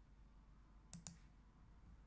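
A computer mouse clicking twice in quick succession about a second in, otherwise near silence with faint room tone.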